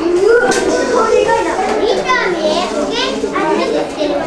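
Many children's voices chattering and calling out over one another, with several high-pitched voices rising and falling.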